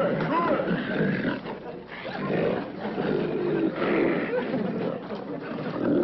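Domestic pigs grunting and squealing as they crowd a feeding trough.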